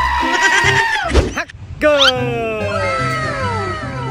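Background music with a steady bass beat. Over it a long, high-pitched cry is held until about a second in. After a short break comes a cluster of falling whistle-like glides, a comic sound effect.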